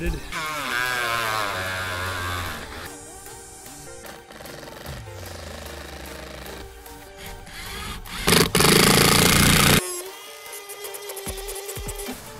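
Background music with a melody, then one loud burst of about a second and a half from a Ryobi cordless impact driver running a screw in.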